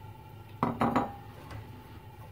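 Two knocks on a stainless steel sauté pan a little over half a second in, about a third of a second apart, with a brief metallic ring, as raw cauliflower florets and snow peas are moved around in it.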